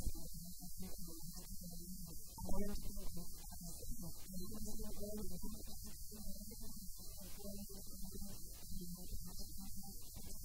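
Steady electrical mains hum on the audio line, with broken, unintelligible fragments of a voice over it.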